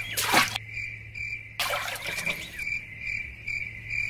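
Insects chirping steadily in outdoor ambience, a high shrill tone pulsing about three times a second over a low hum. Two short rushes of noise break in, about half a second in and again after a second and a half.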